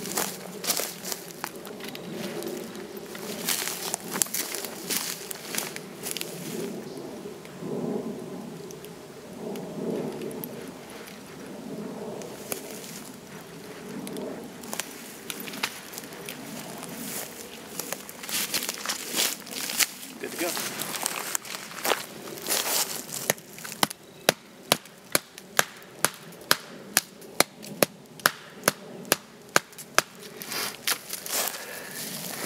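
Rustling and handling of a camping hammock and its cords, with scattered clicks. About six seconds before the end comes a run of evenly spaced knocks, about two a second, as a wooden stake is driven into the ground.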